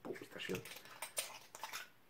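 Faint handling noises: soft rustles and a few small clicks as a small capped bottle is picked up and handled on a table.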